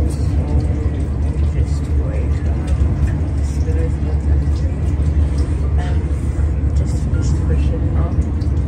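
Steady low rumble of a passenger train running, heard from inside the carriage, with faint voices in the background.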